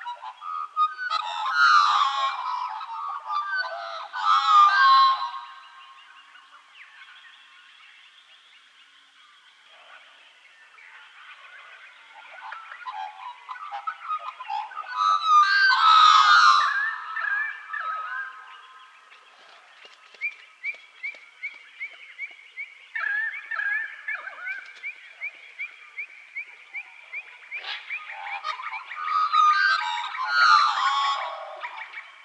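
Birds calling and warbling, in loud bursts about two, four and sixteen seconds in, with quieter chirping between them and a long run of evenly repeated short notes in the last third.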